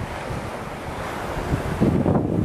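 Surf washing on a sandy beach with steady wind, and wind buffeting the microphone in low rumbling gusts, strongest near the end.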